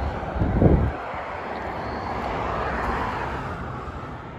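A low thump just under a second in, then the rushing sound of a passing vehicle that swells and fades over about three seconds.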